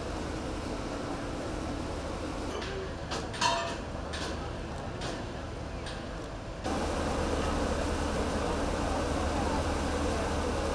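Steady low rumble and hiss of dockside background noise, with a few sharp clicks or knocks about three seconds in; the noise jumps abruptly louder shortly before the end.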